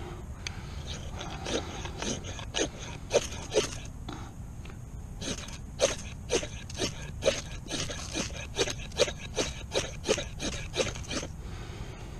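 Ferrocerium rod struck repeatedly with a metal striker: about twenty quick, sharp scrapes at roughly two a second, with a short pause around four seconds in, throwing sparks onto a wax-soaked cotton round that fails to catch.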